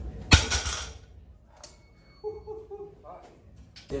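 Heavily loaded barbell (495 lb) set down on the gym floor at the end of a deadlift: one loud crash about a third of a second in, with the weight plates clinking and ringing briefly after it.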